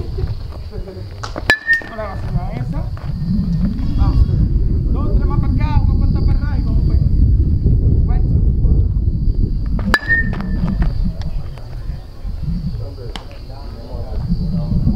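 Metal baseball bat striking pitched balls: two sharp pings about eight seconds apart, each with a brief ringing tone.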